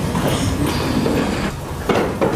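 Continuous rumbling and rustling of people and papers moving in a courtroom, with a sharp knock near the end.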